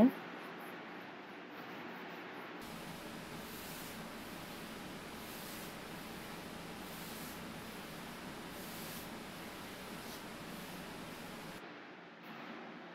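A stain pad wiping water-based wood stain across a wooden dresser top: soft, even swishing strokes that recur every second or two over a steady hiss.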